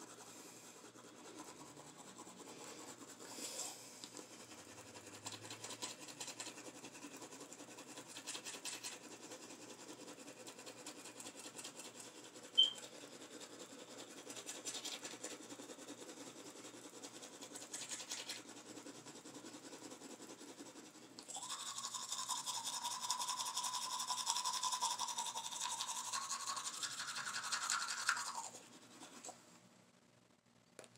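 Manual toothbrush scrubbing teeth with toothpaste, a soft, quick back-and-forth brushing. About two-thirds of the way through, a louder steady rushing noise with a faint hum takes over for about seven seconds, then stops.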